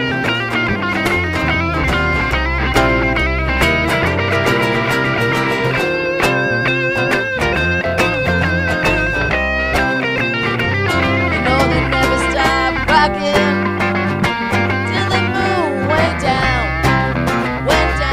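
Instrumental break in a blues rock-and-roll song: lead guitar riffs played on a handcrafted Ingerstyle #8 electric guitar over strummed acoustic rhythm guitar and bass, with notes bent up and down over a steady beat.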